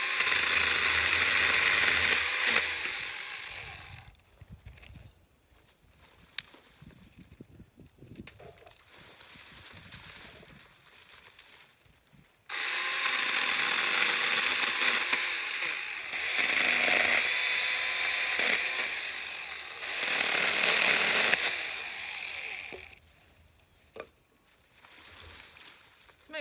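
Small handheld chainsaw cutting through thin dry branches in two runs: one of about four seconds at the start and one of about ten seconds from near the middle. Between the runs, quieter rustling and a few clicks as the brush is handled.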